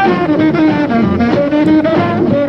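Early rock and roll band playing an instrumental break: a saxophone carries a bending melodic line over upright bass, drums and guitar.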